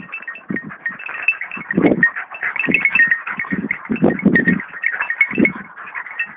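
Jagdterriers and a fox terrier cross growling in short, irregular bursts as they bite and worry a badger.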